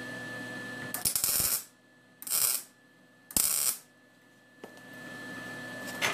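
MIG welder striking three short tack welds, each a crackling burst of about half a second, fusing a fork-piece tongue onto a spoon half.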